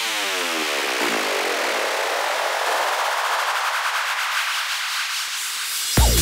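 Psytrance breakdown with the kick drum and bass dropped out: a hissing synth noise sweep, with a cluster of falling pitched tones at first, its low end steadily thinning away. The kick drum and bassline come back in at the very end.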